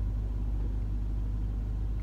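Steady low rumble of engine and tyre noise heard inside a car's cabin while it is being driven.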